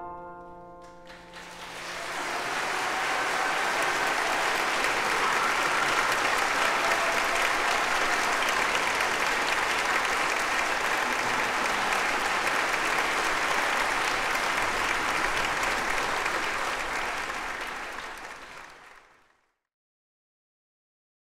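The last piano notes die away, then an audience applauds. The applause builds over a couple of seconds, holds steady, and fades out near the end.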